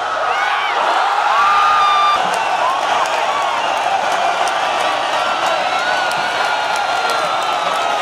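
Large stadium crowd cheering and whooping as a penalty is scored. The roar swells about a second in, with individual shouts rising and falling above it.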